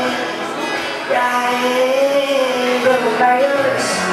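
A woman singing live to her own acoustic guitar accompaniment; about a second in she holds one long note that rises and falls slightly.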